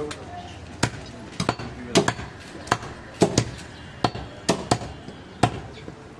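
A butcher's cleaver chopping goat meat and bone on a wooden log chopping block: a run of sharp strikes, about two a second, unevenly spaced.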